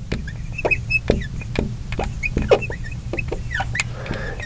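Marker writing on a glass lightboard: a run of short, scratchy strokes and taps with brief high squeaks as the tip drags across the glass.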